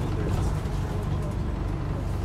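Steady low drone heard from inside an Alexander Dennis Enviro400H MMC hybrid double-decker bus: its drivetrain running, with road and cabin noise.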